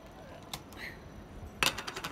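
A screw-top glass jar being twisted open: a faint click about half a second in, then a quick cluster of clicks and clinks as the lid comes off and is set down on the wooden table.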